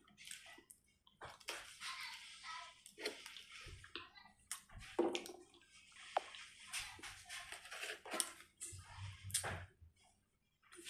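A person chewing a mouthful of baked beans close to the microphone, with wet smacking and short clicks throughout.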